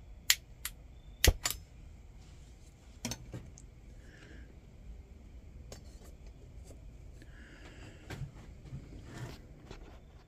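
Scattered sharp clicks and light metal clinks from handling a metal cup and a Sterno Inferno stove's burner housing as the cup is set in place. The loudest pair comes about a second in, with fainter clicks every few seconds after.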